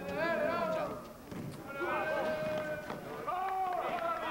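Voices shouting across an outdoor basketball court during play: a few short calls, then one drawn-out call held for about a second in the middle.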